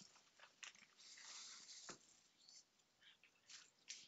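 Near silence, broken by a few faint scattered clicks and a soft hiss about a second in.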